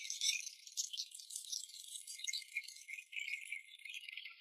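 An audience applauding faintly: a dense, even patter of clapping that sounds thin and crisp, with none of its low body.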